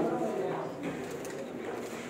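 Faint background voices and room noise in a pool hall, with one short sharp knock right at the start.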